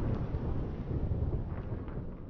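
Low rumbling tail of a logo-intro sound effect, slowly dying away.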